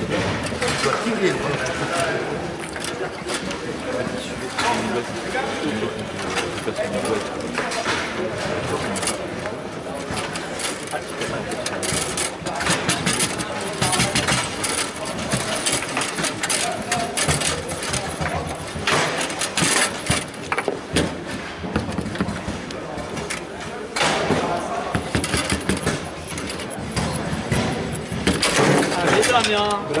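Foosball table in play: the ball and rods give sharp clicks and knocks in quick irregular runs as the ball is struck by the player figures and hits the table walls. Onlookers' voices murmur throughout and grow louder near the end.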